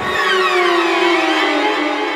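Eerie music sting: a cluster of tones gliding down in pitch together over about two seconds.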